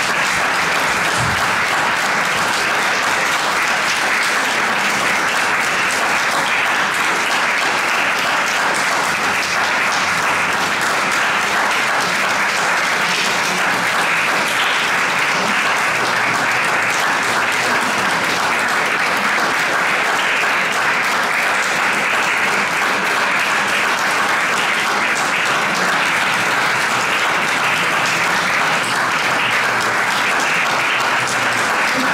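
Concert audience applauding steadily in a hall.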